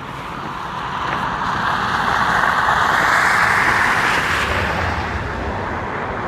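A car passing by on the road: a rushing tyre-and-engine noise that swells to a peak about three to four seconds in, then fades.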